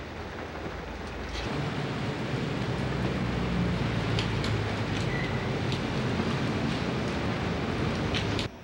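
Wind blowing over the camcorder microphone, a steady noisy rush with a low rumble, getting louder about a second and a half in when a low steady drone joins.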